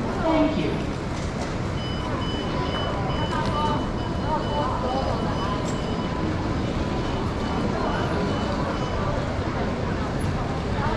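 Busy train-station concourse ambience: indistinct crowd voices over a steady rumble of noise. A high electronic beep repeats at an even pace, about two a second, from about two seconds in until near the end.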